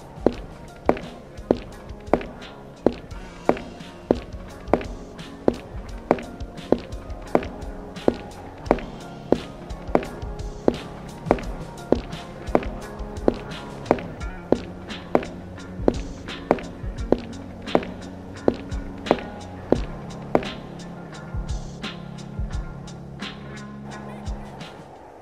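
Slow, evenly paced footsteps, about three steps every two seconds, over music with sustained low chords.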